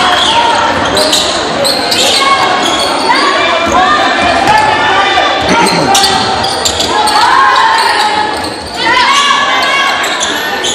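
Basketball bouncing on a hardwood gym floor during live play, with players and spectators calling out throughout, all echoing in a large gym.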